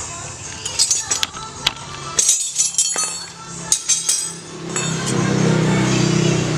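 Light metallic clinks and taps as engine parts and tools are handled. A steady engine hum comes in and grows louder near the end, from a motor vehicle running nearby.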